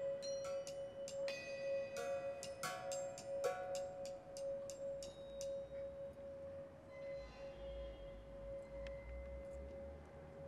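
A hand-held singing bowl sounds one steady, sustained ringing tone. Over it, a quick run of bright struck metal notes rings out for the first five seconds or so, then thins to a few scattered strikes.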